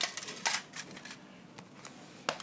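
Handling noise: a few sharp clicks and light rustles, the loudest at the start and about half a second in, as crumpled-foil 'cans' are put into the bin of a Lego garbage truck.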